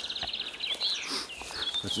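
Small songbirds calling in woodland: a rapid high trill that ends in the first half-second, followed by short, high chirping notes.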